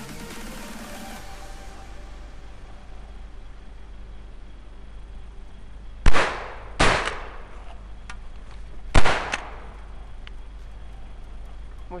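Three 12-gauge shotgun shots, the first two about 0.7 s apart and the third about two seconds later, each with a short echo trailing off through the woods. Intro music fades out at the very start.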